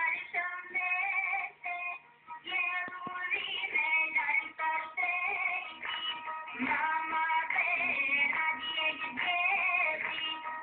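A song sung by high voices, with music.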